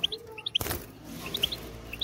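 European goldfinch giving short, high, scattered chirps inside a wire cage, with one sharp knock about half a second in as it flutters about the cage.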